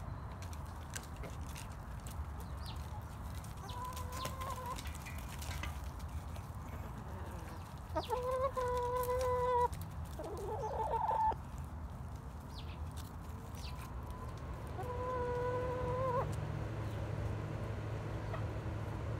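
Chickens calling as they leave the coop: a few long, drawn-out calls, the loudest about eight seconds in and lasting under two seconds, then a short rising call, and another long call near the end, over a low steady rumble.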